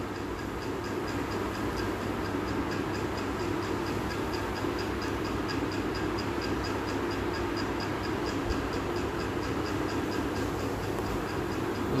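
Steady background noise with a faint, regular high-pitched ticking about four times a second.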